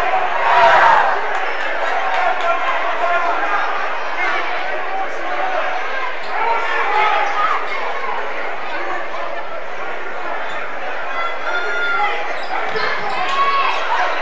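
Gymnasium crowd at a high school basketball game, many voices chattering and calling out at once, with a basketball bouncing on the hardwood court.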